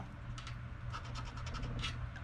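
A coin scraping the coating off a scratch-off lottery ticket in a handful of short, irregular strokes.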